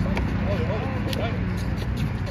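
Indistinct voices of people on a basketball court over a steady low rumble, with a couple of short sharp knocks.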